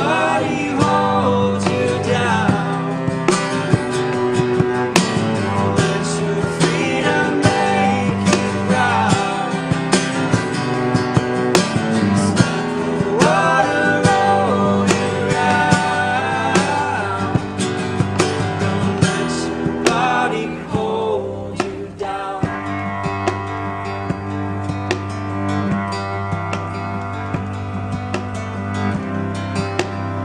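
A folk band plays live: acoustic guitar strummed, cello bowed and a box drum (cajón) keeping time, with several voices singing in harmony. The singing stops about two-thirds of the way through, leaving guitar, cello and drum playing more quietly.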